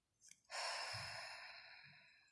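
A woman's soft sigh: one long breath out starting about half a second in and fading away over about a second and a half.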